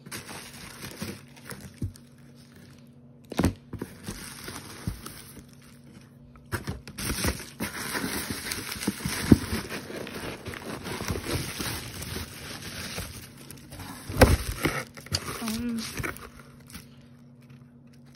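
Bubble wrap and shredded paper filler crinkling and rustling as a jar is dug out of a box and unwrapped. It starts as scattered handling clicks and turns to dense, continuous crinkling about a third of the way in, with a few sharp knocks, before it dies away near the end.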